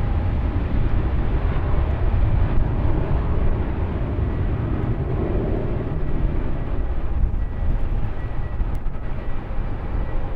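Jet airliner engines, likely a Southwest Boeing 737, heard from a distance as a steady rumble with a faint high whine on top.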